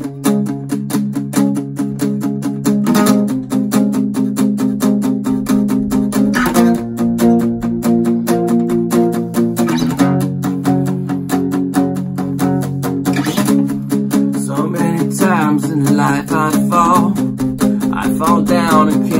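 1963 Silvertone guitar strummed in a quick, steady rhythm as a song intro, the chords changing about every three to four seconds.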